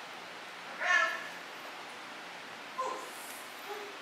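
A dog whining, two short high-pitched whines: a louder one about a second in and a shorter, fainter one near three seconds.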